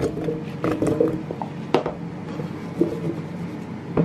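Seasoned raw potato cubes poured into an air fryer drawer, the pieces landing in the basket with a few light knocks and clatters.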